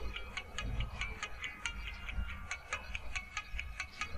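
Electronic music played through a WeCool Moonwalk M1 true-wireless earbud, picked up by a microphone held against it: a quick run of short plucked notes, about four to five a second, over a low beat.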